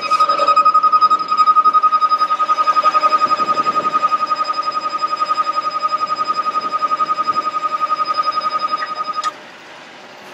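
Electronic warning alarm on the bucket truck sounding a steady high tone with a fast flutter while the curbside outrigger is being operated. It cuts off suddenly about nine seconds in.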